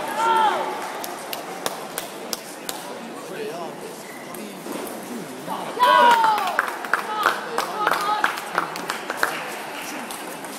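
Sharp, irregular clicks of table tennis balls striking bats and tables in a busy sports hall, over steady crowd chatter. Voices call out just after the start and more loudly about six seconds in, and the clicks come thicker towards the end as a rally gets going.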